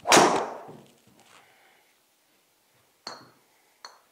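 A golf driver with a light, 45-inch build strikes a ball in a full swing: one loud, sharp crack just after the start that rings briefly in the small room as the ball hits the simulator screen. Two small, clinking clicks follow near the end.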